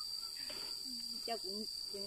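Insects in the forest droning with one steady, high-pitched tone.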